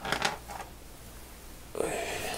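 Small steel ratchet parts clinking as they are handled: a quick cluster of sharp metallic clicks at the start, with one more soon after.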